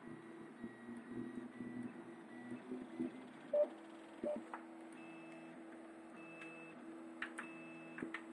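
Stepper motors of a Prusa 3D printer running during a print, making steady pitched hums that change pitch as the head and bed shift their moves, with a few faint higher beeping tones later on. Two short clicks, the loudest sounds, come a little under halfway through.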